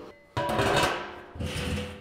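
Empty steel drum being shifted on a concrete floor: a sudden metallic scrape about a third of a second in that rings and dies away, then a softer scrape near the end.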